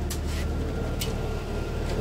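Steady low mechanical hum, like an engine or air-conditioning unit running, with a few faint light clicks.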